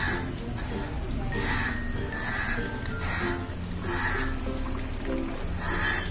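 Crows cawing repeatedly, harsh calls at uneven spacing about once a second, over light background music.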